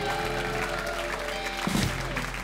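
Live rock band with acoustic and electric guitars, bass and drums holding a final chord, ending with a short closing hit about one and a half seconds in. An audience is applauding throughout.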